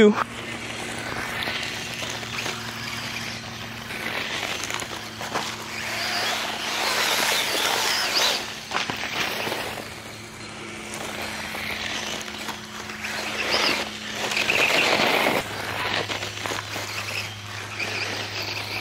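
Losi Promoto MX RC motorcycle being driven on loose gravel: its tyres scrabble over the gravel with a faint steady electric hum underneath, the noise swelling loud twice as the bike passes close, around the middle and again near the end.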